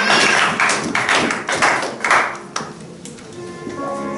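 Congregation clapping in time, about two claps a second, which fades out a little past two seconds in. A held musical chord starts near the end.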